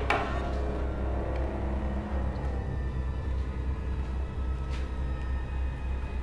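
Horror-film score: a sudden sharp hit opens it, then a low rumbling drone with sustained eerie tones held above it.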